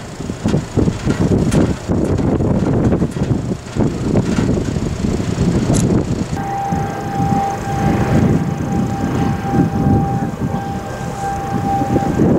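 Wind gusting against the microphone throughout. About halfway through, a steady siren tone joins in and holds to the end, the kind of outdoor warning siren sounded for a tornado.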